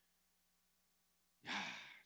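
Near silence, then about a second and a half in a man lets out a loud, breathy exclamation, a sigh-like "ya" of being moved.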